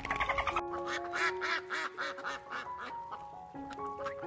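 Mallard duck quacking in a quick run of about six quacks starting about half a second in, then a few more scattered ones, over a simple melody of background music.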